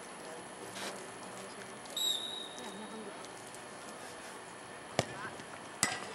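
A referee's whistle blows once, short and high, about two seconds in. A sharp knock comes near the end as the penalty kick strikes the ball. Faint distant voices carry from the field throughout.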